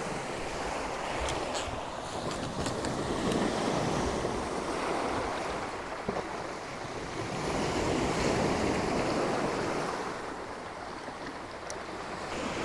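Small sea waves washing onto a pebble beach, as a steady wash of surf that swells twice, about three and eight seconds in, then falls back. A few faint clicks sound over it.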